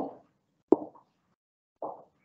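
A single short, sharp click or pop just under a second in, followed near the end by a brief, fainter low sound.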